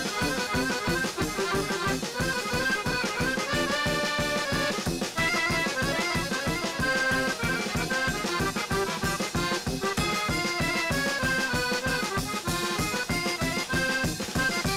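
Klezmer band playing an instrumental tune, the piano accordion prominent alongside violin, over a steady quick beat.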